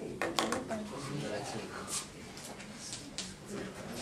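Chalk on a blackboard as figures are written: a few sharp taps in the first half-second, then lighter scattered taps and scrapes.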